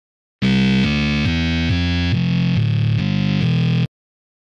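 Electro bass line from Logic's ES1 software synthesizer, run through distortion and a Guitar Amp Pro preset, playing a run of short notes about three a second that shift in pitch, with a harsh, crunchy edge. It starts about half a second in and stops abruptly just before the end.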